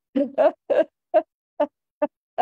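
A man laughing in about five short voiced bursts, the bursts coming further apart as the laugh trails off.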